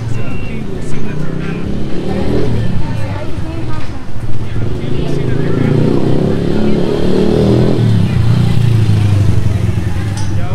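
Busy street noise: a motor vehicle engine running close by, with people's voices around it.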